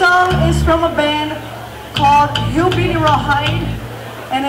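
A woman talking into a stage microphone through the PA, with a low steady hum underneath.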